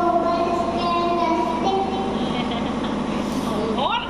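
A young boy singing long, held notes into a handheld microphone.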